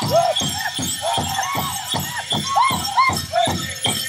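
Powwow drum group playing a grand entry song: a steady drumbeat of about three to four strokes a second under high, arching group singing. Dancers' leg bells jingle along.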